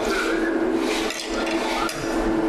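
A man chewing a mouthful of food close to a clip-on microphone, with wet, crackly mouth noises in the first second, over a steady low hum.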